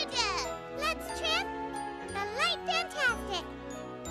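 Bright children's music with sustained chords and a tinkling jingle, overlaid by clusters of quick high swooping glides, rising and falling, that come about once a second.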